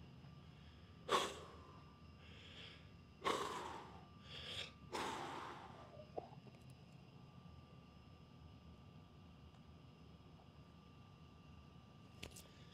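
A man's heavy breaths while flexing, four short noisy breaths in the first six seconds, then quiet room tone with a faint steady hum.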